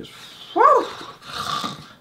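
A short high-pitched whine that rises and falls about half a second in, followed by a softer breathy sound.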